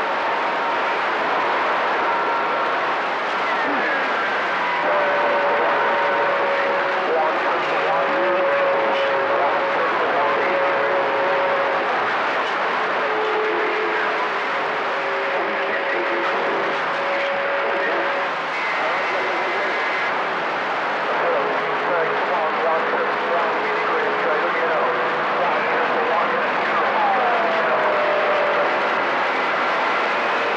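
CB radio receiver on channel 28 (27.285 MHz) giving out steady band static and hiss from skip conditions. Faint whistling heterodyne tones come and go over the noise, and one whistle slides down in pitch near the end.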